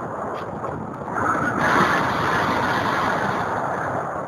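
Wind rushing over the microphone of a camera riding on a radio-controlled glider in strong wind, a steady rush that grows louder about a second in.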